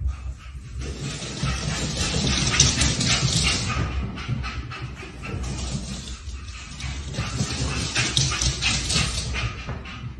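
A small dog's sounds over a dense, scratchy noise, easing briefly about six seconds in.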